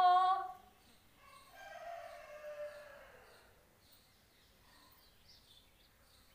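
A voice holding a long sung note cuts off about half a second in. About a second and a half in, a rooster crows once, its call falling in pitch toward the end. Faint high bird chirps repeat about twice a second.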